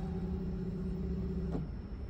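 Mitsubishi Mr.Slim indoor unit fan motor running with a steady hum, then cutting out with a faint click about one and a half seconds in. The unit has reached its set temperature and gone to thermo-off, stopping the indoor fan.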